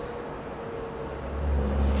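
Low rumble that swells up over the second half, over a faint steady hiss.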